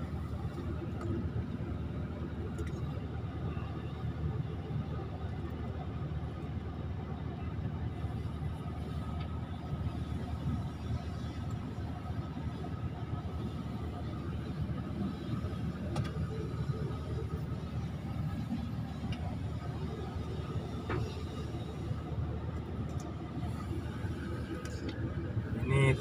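Hydraulic excavator's diesel engine running steadily, a low even rumble heard from the operator's cab.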